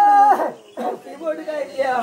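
A person's voice: a loud, high-pitched drawn-out call that falls away and breaks off less than half a second in, followed by talking.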